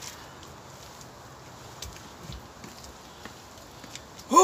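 Quiet outdoor background noise with a few faint, scattered clicks and one soft low thump a little past the middle, the small handling noises of people working at the water's edge.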